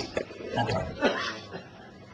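A man's voice in a pause of speech: a single short word and a few brief vocal sounds, then a lull.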